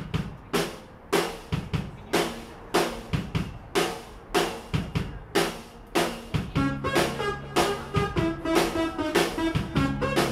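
Live band opening a song: the drum kit plays a steady pattern of snare and bass drum hits, about two a second. About six and a half seconds in, the other instruments join with sustained notes.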